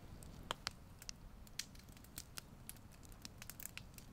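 Campfire crackling: scattered, irregular sharp pops and snaps over a faint low rumble.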